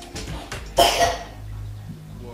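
A woman coughs once, a sudden burst a little under a second in, over quiet background music.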